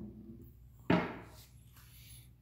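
A single knock about a second in, a hard object being put down, fading within about half a second.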